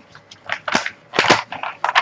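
Protective release paper on a diamond painting canvas crackling and crinkling as it is folded back and handled, in a run of sharp bursts, the loudest a little past the middle.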